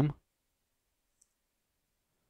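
The end of a spoken word, then near silence broken by one faint, short click about a second in.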